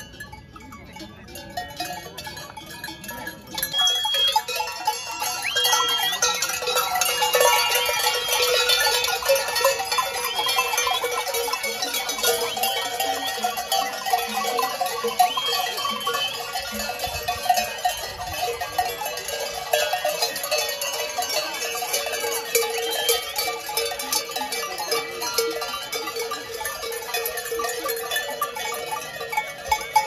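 Many metal bells on the wooden collars of a herd of Garganica goats clanking and jangling as the herd moves about. The bells are sparse at first and thicken into a continuous jangle about four seconds in.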